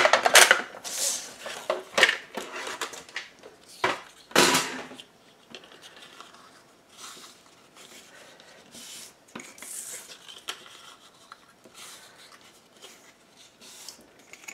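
Cardstock strips being scored on a grooved scoring board, with a few loud scraping strokes in the first five seconds. After that, quieter rustling and creasing as the strips are folded on the score lines.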